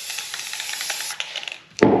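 Aerosol spray-paint can hissing in one steady burst as it lightly fogs paint over wet epoxy resin, cutting off a little over a second in.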